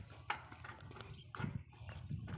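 A few irregular soft knocks and clunks, about three in two seconds, over a faint low rumble.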